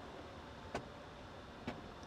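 Two light clicks about a second apart from the button-operated fold-out fixture in the back of a Bentley Mulsanne's front seat, over a quiet steady hum in the car's cabin.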